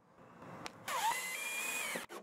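Cordless drill driving a screw into a PVC pipe fitting: the motor whine rises about a second in, then runs at a steady pitch for about a second.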